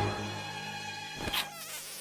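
Cartoon sound-effect track: a steady buzzing hum of held tones, with a quick swish about a second and a quarter in, then falling pitch sweeps.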